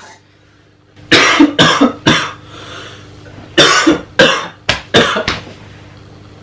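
A man coughing in a fit: three loud coughs in quick succession about a second in, then after a short pause about five more coughs in a row.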